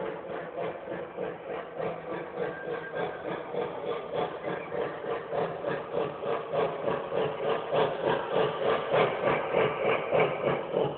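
Lionel Legacy Blue Comet O-gauge model steam locomotive running past with its electronic steam sounds: a regular, rhythmic chuffing over the rumble of wheels on the track, growing louder toward the end.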